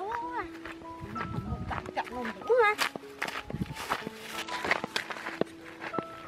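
Footsteps through grass, with background music of held notes and short calls that rise and fall in pitch.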